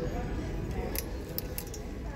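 Clothes hangers clicking against a metal clothing rack as garments are pushed along it, with a few sharp clinks around the middle.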